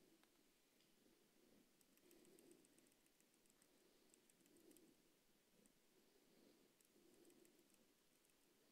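Near silence: faint room tone with scattered light clicks of laptop keys being pressed in quick runs.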